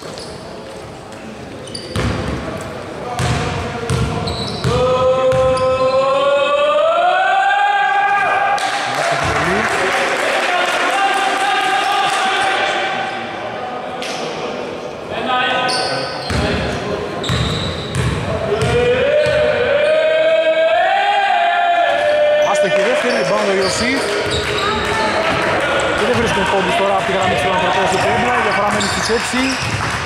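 Basketball bouncing on a hardwood court as it is dribbled around free throws. Twice a voice calls out in a long, drawn-out tone that rises in pitch.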